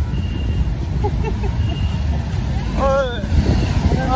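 Steady low rumble of a motorcycle in motion, its engine and wind on the microphone while riding. A voice calls out briefly about three seconds in.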